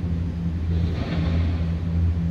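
Steady low hum of a vehicle engine idling, heard inside the van's cabin, with a faint rushing sound swelling about halfway through.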